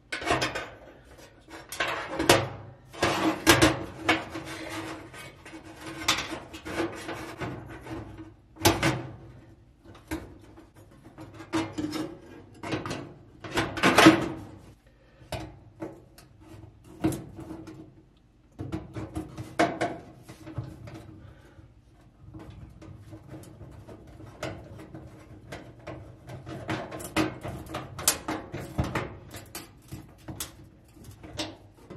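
Irregular clicks, knocks and short scrapes of a sheet-metal igniter bracket and its wiring being handled and fitted against the sheet-metal floor of a gas oven.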